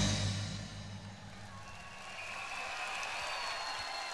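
The band's final chord ringing out and fading at the end of a live Cantonese pop song, leaving faint concert crowd noise with some applause. A thin high held tone sounds over the crowd in the second half.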